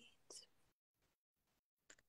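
Near silence, with one brief faint sound near the start and stretches of complete digital silence.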